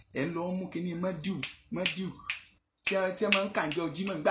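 A man's voice speaking animatedly, with several sharp, bright clicks among his words.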